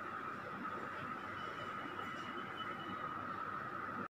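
Steady background room noise with no speech, and a faint thin high tone in the middle for a second or two.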